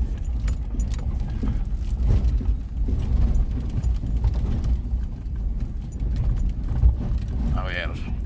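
Car driving slowly over a rough dirt road, heard from inside the cabin: a steady low rumble of engine and tyres with loose items rattling and clinking over the bumps.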